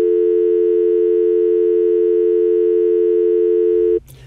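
Telephone dial tone heard down the line once the caller has hung up: a loud, steady two-note hum, unbroken, that cuts off suddenly.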